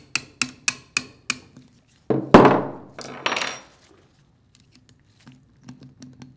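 Small hammer tapping a steel punch to drive the pin out of a treater valve's trunnion hub, five light metallic taps about three to four a second. About two seconds in comes a much louder metal clank that rings on, then a second ringing clank a second later.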